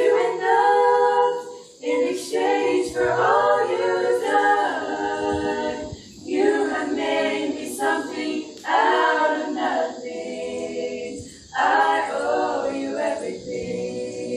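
Five young women singing a hymn a cappella in harmony, in phrases broken by short breaths, the last phrase starting strongly and then tapering off near the end.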